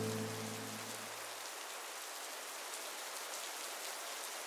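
Steady rain falling. The last low notes of a downtempo music track fade out under it in the first second and a half.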